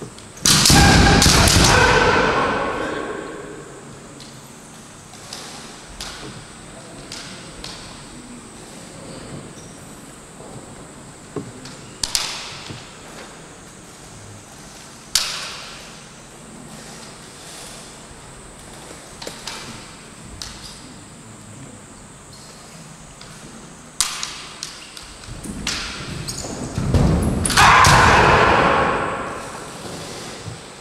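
Kendo fighters' kiai shouts: one long, loud cry just after the start and another near the end, each dying away in the hall. In between come a few sharp cracks and thuds from bamboo shinai and stamping feet on the wooden floor.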